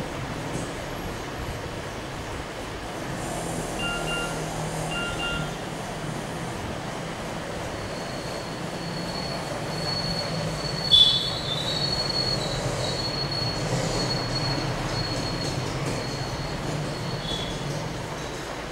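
Steady background noise with a thin, high-pitched squealing tone that sets in about eight seconds in, and a sudden louder squeal about eleven seconds in. Two short beeps come around four and five seconds in.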